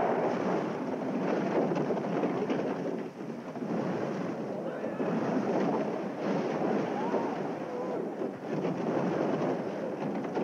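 Film sound of an avalanche: a sudden, loud, sustained rush of snow pouring into and burying the wrecked airliner's fuselage.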